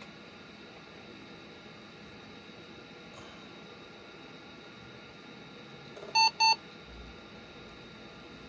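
Compaq Concerto's built-in speaker giving two short, identical electronic beeps in quick succession during a reboot, over a faint steady electronic whine. The beeps come from the CF-to-PCMCIA adapter in its card slot.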